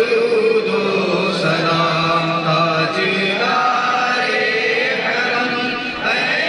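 Several men's voices chanting together, in long held notes that shift in pitch partway through.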